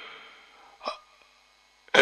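A single short catch of breath from a man speaking into a headset microphone, about a second into a pause in his talk.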